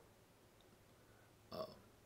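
Near silence with room tone, broken about one and a half seconds in by one brief, faint throat or mouth sound from the man speaking.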